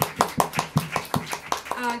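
Hand clapping, sharp claps at about five a second, dying away as a woman's voice begins near the end.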